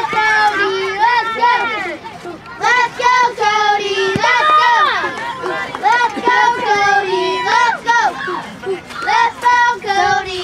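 Young children chanting a team cheer together, their high voices rising and falling in a sing-song rhythm, phrase after phrase.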